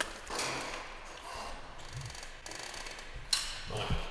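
Light irregular clicking and rattling of hand work on metal car-lift parts, with one sharper click about three seconds in.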